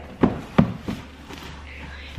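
A few sharp knocks and thumps in the first second as a large cardboard box is handled, then faint rustling.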